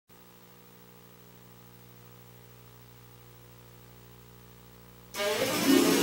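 A faint steady electrical hum, then about five seconds in a recorded enka backing track starts abruptly and plays loud.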